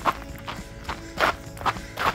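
Footfalls of a runner on a leaf-strewn paved trail, a steady beat of about two and a half steps a second.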